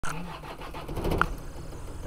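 Car engine running, with a louder burst about a second in.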